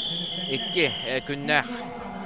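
Match timer buzzer sounding one long, high, steady tone that cuts off about a second in, signalling that the wrestling bout's time has run out. A man's commentary is heard over it.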